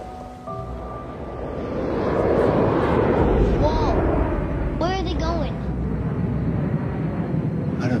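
Jet aircraft passing overhead: a loud rumbling roar that builds about two seconds in and carries on, over held notes of trailer music.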